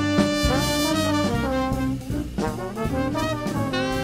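Small jazz band playing, with trumpet, trombone and saxophone over piano, bass and drums.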